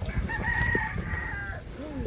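A rooster crowing once: one long, held call of about a second and a half that falls away at the end.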